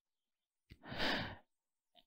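A single breath drawn by a man close to the microphone: one soft, noisy rush of about half a second, about a second in.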